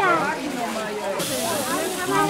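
People talking, with a steady high hiss that starts abruptly about a second in.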